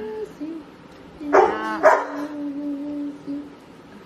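A dog barking twice in quick succession, about a second and a half in.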